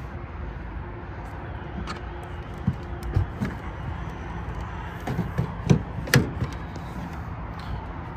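Clicks and knocks of a Tesla Supercharger charging connector being unplugged from the car's charge port and handled, a few around three seconds in and a cluster around five to six seconds in, over a steady low hum.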